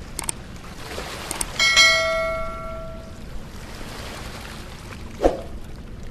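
Intro sound effects over steady rushing river water: a couple of clicks as the subscribe button is pressed, then a single notification-bell chime about a second and a half in that rings out for over a second. A short swoosh near the end.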